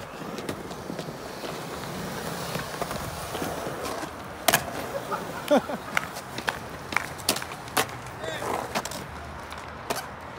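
Skateboard wheels rolling on smooth concrete with a steady rumble, broken by several sharp clacks of the board, the loudest about halfway through; the rolling fades near the end.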